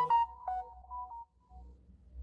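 A short electronic ringtone-style jingle: a quick run of clean pitched notes that tails off about a second and a half in.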